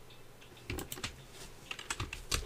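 Computer keyboard typing: a few light key clicks in two short clusters, the first about two-thirds of a second in and the second near the end, as values are entered.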